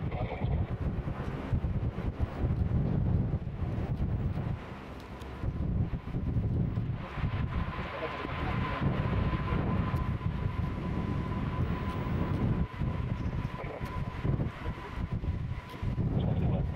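Canadian CP-140 Aurora's four turboprop engines running as the aircraft rolls along the runway, with a steady high whine coming in about seven seconds in. Heavy wind rumble on the microphone throughout.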